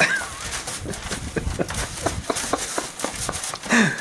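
A horse eating grain out of a feed tub: a run of irregular crunches and clicks as it chews and lips up the scattered grain.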